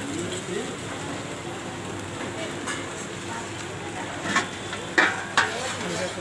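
Aloo tikki frying on a flat iron griddle, a steady sizzle, with a few sharp metal knocks near the end from the spatula and steel plate.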